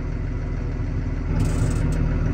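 Tractor engine heard from inside the cab, running steadily and picking up slightly about halfway through.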